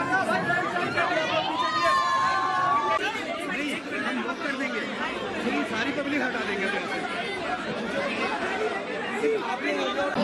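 Crowd of people talking and calling over one another, many voices at once with no single clear speaker. There are a few louder calls in the first three seconds.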